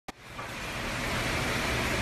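A steady rushing hiss, like room or ventilation noise, that fades in over the first half second after a click at the very start.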